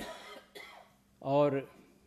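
A short cough at the very start, fading within half a second, followed by a man's single spoken word.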